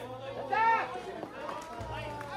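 Raised voices calling out among a crowd, with one loud, drawn-out call about half a second in, over crowd chatter.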